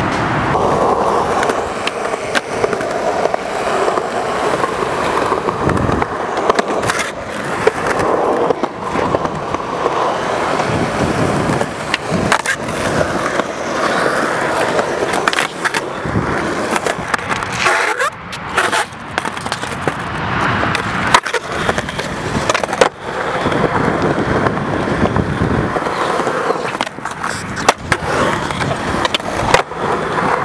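Skateboard wheels rolling on concrete, broken by repeated sharp clacks of the board's tail popping and the board landing.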